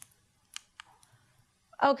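Two short, sharp clicks about a quarter of a second apart, as the lecture slide is advanced; a woman's voice begins near the end.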